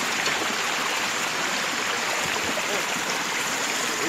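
Shallow creek water running steadily over a muddy bed as a continuous rushing hiss.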